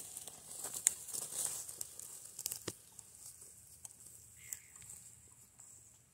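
Faint, scattered scrapes, crackles and clicks of a curved-tined garden fork working red soil and dry straw mulch in a furrow, mixing cured chicken manure into the soil.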